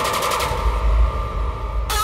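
Electronic music intro sound design: a fast rattling stutter, then a deep, muffled bass rumble under a held tone that opens back out to full brightness near the end.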